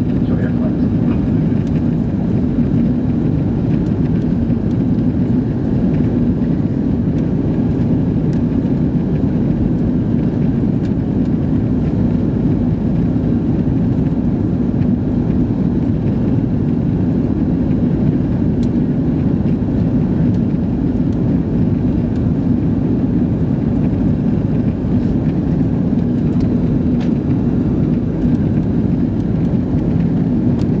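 Cabin noise inside an Airbus A330-300 in flight: a loud, even rumble of engines and airflow with a steady low hum in it, unchanging throughout.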